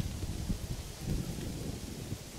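Wind rumbling on the camera microphone outdoors, with a few soft low thuds.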